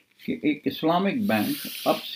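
A man talking in Urdu, with a sustained hiss near the end.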